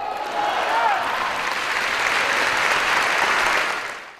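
A large theatre audience applauding, with dense, steady clapping that starts to die away near the end.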